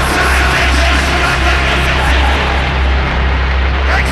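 Dark industrial noise music: a heavy, steady low drone under a thick layer of harsh noise, with no beat or melody.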